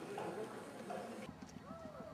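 Indistinct voices of several people talking. About a second in, a cut brings a quieter scene with a rapid patter of faint clicks and a few short rising-and-falling calls.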